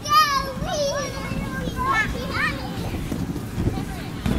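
Young children's high-pitched squeals and short calls while playing, a wavering cry at the start and several brief ones after, over a low rumble.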